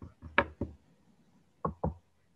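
Clicking at the computer: sharp knocks in quick pairs, about a fifth of a second apart. There is a cluster in the first half-second, the loudest about half a second in, and another pair near the end.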